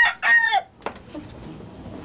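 A rooster crowing, the call ending about half a second in, followed by a single faint click.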